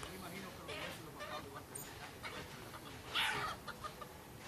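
Chickens clucking in short calls, with one louder, brief call about three seconds in.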